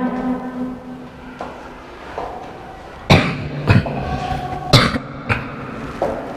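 A person coughing and clearing their throat: about four short coughs over two seconds, starting halfway through.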